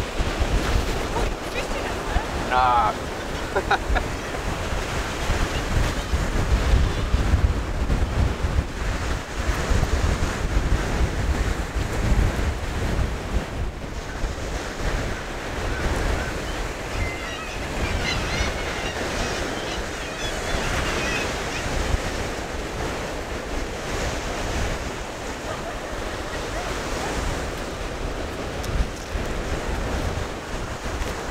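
Small sea waves breaking and washing up the beach, with gusty wind buffeting the microphone.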